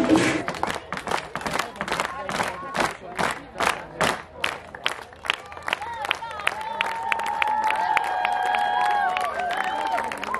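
Clapping in a steady rhythm, about three claps a second, which breaks up after about five seconds into scattered applause with drawn-out cheers and whoops from the audience.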